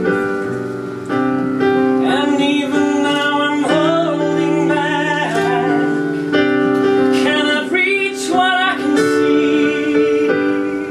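Live piano playing sustained chords, joined about two seconds in by a solo voice singing long held notes with vibrato.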